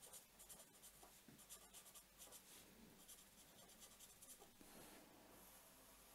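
Faint scratching of a felt-tip pen writing on paper in short, quick strokes, then a longer, steadier stroke near the end as a line is drawn under the words.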